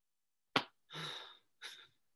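A woman's sharp mouth click, then a soft breathy exhale like a sigh that fades out, followed by a faint short breath sound. It is much quieter than her speech.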